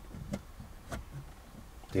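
Light plastic clicks from a phone holder being fitted over a car's air-vent mount: two sharp clicks about half a second apart, then a couple of softer taps.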